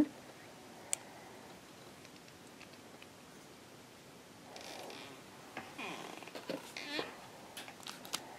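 Faint handling sounds from a metal clay extruder being worked by hand at its threaded end: a sharp click about a second in, then soft rustling and scraping, and a few small clicks near the end.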